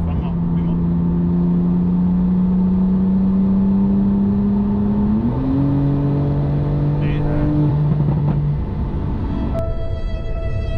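Twin-turbo flat-six of a tuned Porsche 991.2 Turbo S accelerating hard, heard from inside the cabin. The revs climb slowly, step up in pitch about five seconds in as on a downshift, then climb again; the turbos are not working, so the car pulls weakly. Music starts near the end.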